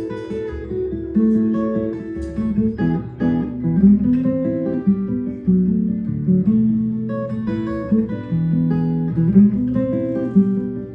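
Handmade Linda Manzer acoustic guitar played solo fingerstyle, with ringing plucked notes: a melody over low bass notes.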